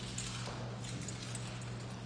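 Eyebrow threading: the twisted thread rolling across the brow and snapping out hairs, heard as a run of faint, irregular clicks, over a steady low hum.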